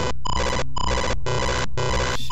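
Harsh, ringtone-like electronic beeping played through the computer by a running virus payload while it corrupts the screen. The tones come in choppy blocks about twice a second.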